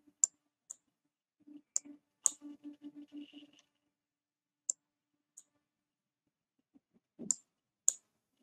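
Computer mouse clicking: about eight sharp single clicks at irregular intervals, with a faint low pulsing hum for about two seconds near the start.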